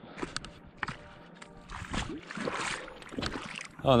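Shallow water splashing and sloshing as a hooked fish is brought in toward the landing net, loudest about two seconds in, with a few sharp clicks scattered through.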